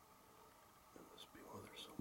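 Faint whispering by a person, starting about a second in, in short breathy phrases with hissing 's' sounds.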